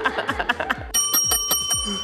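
Background music with a steady beat; about a second in, a bright bell-like ding sound effect rings out and fades away over about a second.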